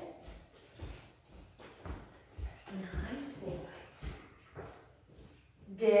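Footsteps on a hardwood floor, a series of soft, irregular thumps, with a brief spoken word about three seconds in.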